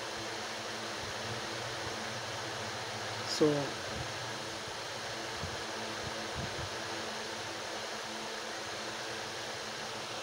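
Steady hum and hiss of a running fan.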